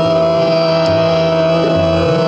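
Hindustani khyal vocal in Raag Ahir Bhairav: a male voice glides down into a long steady held note, over harmonium and a steady drone.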